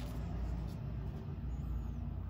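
A steady low rumble, with faint sounds of hands turning over a toy figure.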